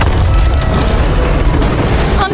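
Loud cinematic destruction sound effects: a deep, continuous rumble with dense crashing and crackling debris noise over it.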